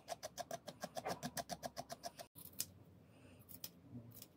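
A brush stroked rapidly over a yarn pom-pom to fluff it out, about eight strokes a second, stopping abruptly about two seconds in. A few faint clicks follow.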